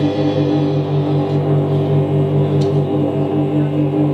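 Live blues-rock band holding a steady, droning chord on electric guitars and bass, loud and unchanging, with no singing.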